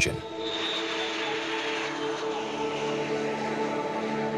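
Boeing MQ-25 Stingray's Rolls-Royce AE 3007N turbofan at takeoff power as the drone lifts off the runway, a steady jet rush that is strongest in the first couple of seconds.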